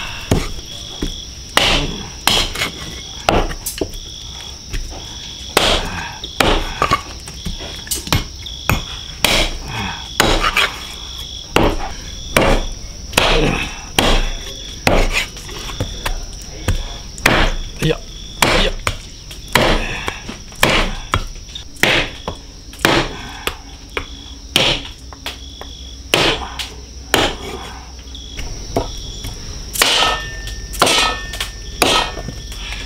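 Heavy cleaver chopping yak ribs, meat and hard bone, on a thick wooden chopping block: repeated hard chops, one or two a second with short pauses. Insects chirr steadily in the background, one of them in even pulses.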